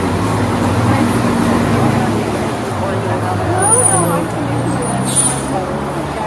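Road traffic close by, with a heavy vehicle's engine running steadily under the murmur of people talking, and a brief hiss about five seconds in.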